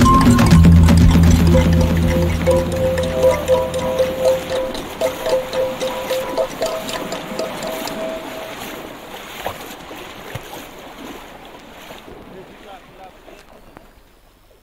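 The end of a dub track fading out. The deep bass line dies away in the first few seconds, and a higher line of melodic notes carries on to about two-thirds of the way through. The whole sound thins out to faint by the end.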